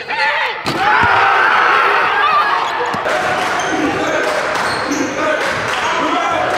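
Live basketball game sound: voices shouting without clear words and a basketball bouncing on the hardwood court. A sharp impact comes about half a second in.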